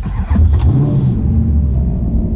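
A Maserati engine starting: it catches about a third of a second in, its revs flare up and drop back, then it settles into a steady idle.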